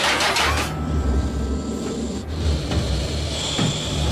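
Sci-fi cartoon sound effects: a sudden sharp noise at the start, then a low rumble with irregular mechanical clanking and whirring, and a thin high tone comes in near the end.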